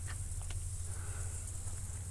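Faint outdoor background: a steady low rumble with a few small, faint clicks near the start.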